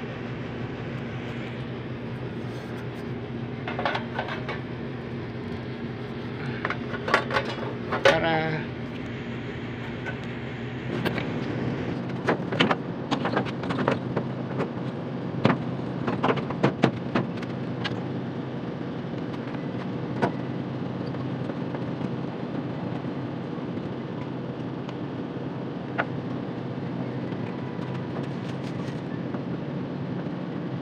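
Split air conditioner's outdoor unit running with a steady low hum from its compressor and fan. Over the hum come clusters of clicks, knocks and clatter from its sheet-metal casing being handled, most of them between about 4 and 17 seconds in.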